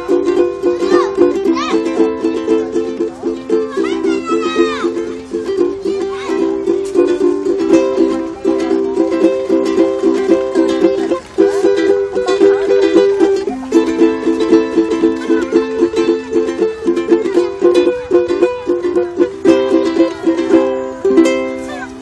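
Ukulele strummed in a steady rhythm, running through the practice chord changes C, G7, C7, F, Em and Am. The chord shifts come every few seconds, with a brief break in the strumming about halfway through.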